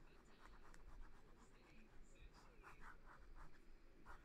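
Pen scratching on paper in quick, short sketching strokes, faint, in two runs: briefly about half a second in, then a longer run near the end.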